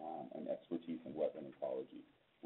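Only speech: a man's voice talking in short phrases over a narrowband, telephone-like line.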